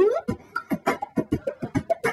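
Beatboxing into a handheld microphone. A held hummed note slides up and stops at the very start, then comes a fast run of mouth-made kick-drum and hi-hat hits.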